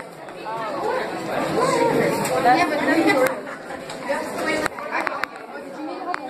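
Indistinct chatter of several voices talking at once, with a few sharp clicks in the second half.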